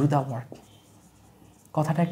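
Marker pen writing on a whiteboard, a faint scratching heard in the pause between short bursts of a man's speech at the start and end.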